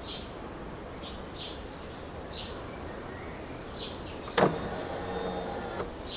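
Honda Forza 350's electric windscreen motor lowering the screen. It starts suddenly about four and a half seconds in and runs steadily for about a second and a half.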